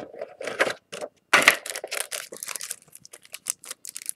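Hands handling a metal Yu-Gi-Oh! card tin and the cards inside it: a run of irregular light clicks, taps and rustles.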